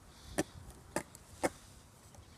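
A wooden skateboard clacking against asphalt three times, about half a second apart, as it is stepped on and worked underfoot.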